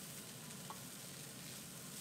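Noodles and vegetables sizzling faintly in a nonstick frying pan as they are stir-fried with a wooden spatula, with a light click of the spatula about a third of the way in.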